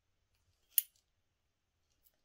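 A single sharp metallic clink about a second in from the heavy metal buckle of a leather belt being knocked; the weighty clink is a sign of a solid, heavy buckle.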